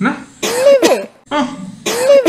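A short vocal exclamation whose pitch rises and falls, repeated identically about every second and a half, twice here, as an edited loop of the same snippet.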